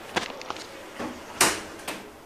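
Otis 2000 scenic elevator's glass car doors sliding shut: a few light clicks, then a sharper clunk about one and a half seconds in as they close.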